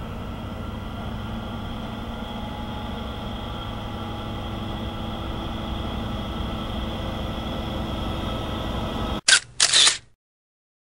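MaK G1206 diesel-hydraulic locomotive hauling a container train on approach, its engine running steadily and growing louder as it nears. About nine seconds in, the sound cuts off and two loud camera shutter clacks follow.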